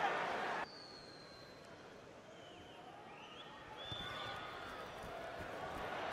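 Stadium crowd noise that drops suddenly about half a second in to a hushed, low murmur, the crowd quieting for a penalty kick at goal, with a few faint whistles. It grows slightly louder in the second half.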